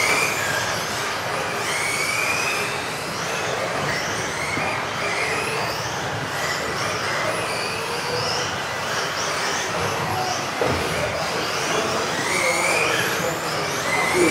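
Several electric off-road RC buggies racing around an indoor track: overlapping high-pitched motor whines rising and falling as they speed up and brake, over steady tyre noise, with a single knock about ten and a half seconds in.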